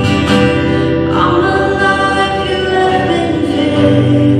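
Live worship band: several voices singing a worship song together over acoustic guitar.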